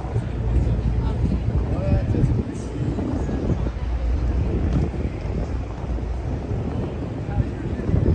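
Wind rumbling and buffeting on the microphone, with faint chatter from a crowd of passers-by.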